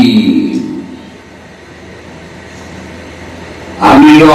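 A man preaching a Bengali sermon: his voice trails off with echo, then a pause of about three seconds filled with a steady low hum and background noise, and his voice returns just before the end.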